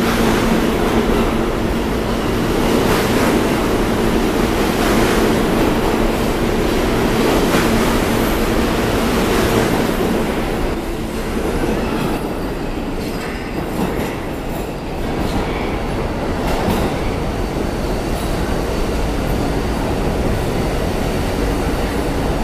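R160 subway train running through the station at speed on the express track without stopping: a loud, steady rail rumble with regular clacks every two to three seconds as the cars go by. After about ten seconds the last car passes and the sound eases into a receding rumble with a few thin, high wheel squeals.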